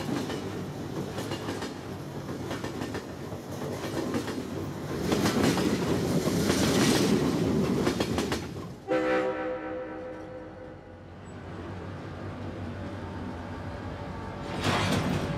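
A train passing close by, its rumble and wheel clatter swelling loud about five seconds in. Just before nine seconds the noise breaks off suddenly and a long, steady pitched tone sounds and slowly fades.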